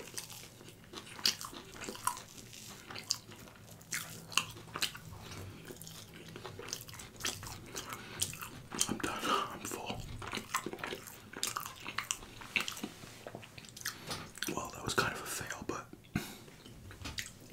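Close-miked, wet mouth sounds of eating soft, sticky stretchy cheese: a run of lip smacks and sticky clicks as it is chewed, with a few denser stretches of chewing partway through and near the end.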